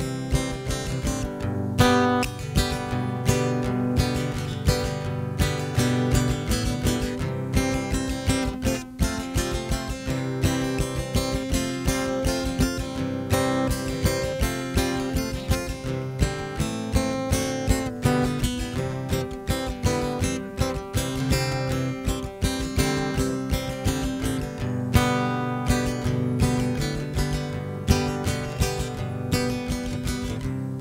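Martin dreadnought steel-string acoustic guitar strummed in a fast, even rhythm of chords, with no singing.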